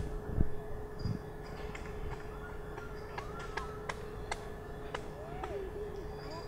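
Quiet outdoor background with a faint steady hum and a few light clicks, and faint gliding calls around the middle and again near the end.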